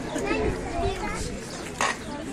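People talking and a child's voice in a crowd, with one sharp knock just before the end.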